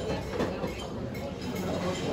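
Restaurant terrace ambience: a steady mixed hubbub of diners over a low rumble, with one short knock about half a second in.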